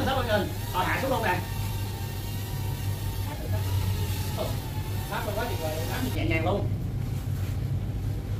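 Small toy quadcopter drone flying, its propellers making a thin steady whine that stops about four and a half seconds in as it comes down, over a steady low hum and brief bits of talk.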